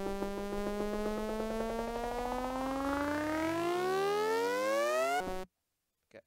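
Synthesized riser from the Serum soft synth: a buzzy sawtooth tone sweeping upward in pitch, slowly at first and then faster toward the end, over an evenly ticking noise layer. It cuts off suddenly about five seconds in.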